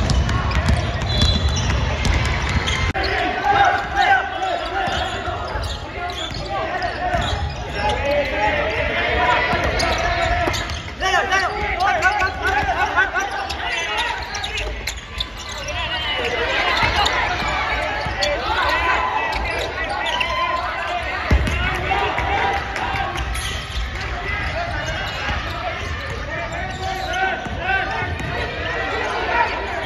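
Basketballs bouncing on a hardwood gym floor, with players' voices and calls echoing around the hall.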